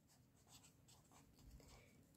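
Very faint scratching of a pen writing on paper, a series of short strokes as a word is written out.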